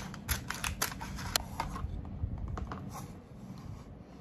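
A sheet of plastic laminating film being cut and handled: a run of sharp, irregular clicks and crinkles, thinning out in the second half.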